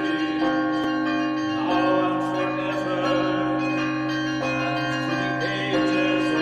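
Intro music built on church bells ringing, with strikes every half second or so whose ringing overlaps over long held tones.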